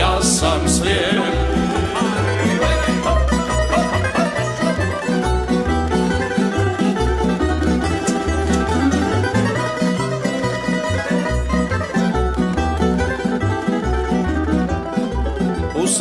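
Live tamburica band playing an instrumental passage: plucked tamburicas carry the tune over a steady bass line from the berde (double bass).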